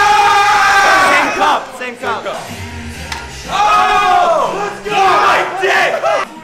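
Several young men yelling in celebration: one long shout that breaks off about a second and a half in, then a second round of yelling from about three and a half seconds, over background music.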